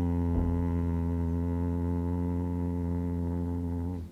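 A man's voice chanting one long, low 'om' into a glass of water held at his lips, held on a single steady pitch and stopping near the end.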